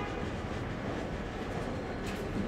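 Steady low rumble of background room noise.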